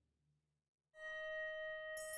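Eerie orchestral percussion music. A low drum fades to near silence, then about a second in a metallic percussion instrument starts to ring, holding one steady tone with several overtones.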